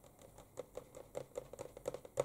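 Faint, irregular light clicks and ticks, about six a second, from fingers handling the glossy paper pages of a hardback art book.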